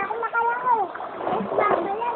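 People's voices calling out in drawn-out, rising and falling shouts, over splashing river water.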